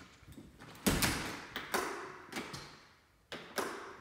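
A door shutting with a thud about a second in, then a few footsteps on a hard floor.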